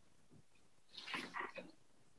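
Near silence on an online call, broken about a second in by a short, faint sound lasting about half a second.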